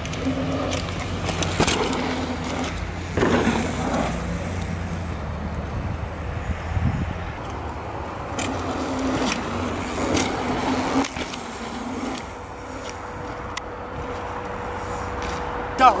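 Mountain bikes riding a dirt trail: tyres rolling over the ground and the bikes rattling, with a few sharp knocks.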